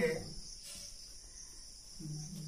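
Marker pen writing on a whiteboard, a few faint soft strokes, under a steady high-pitched chirring hiss like a cricket chorus.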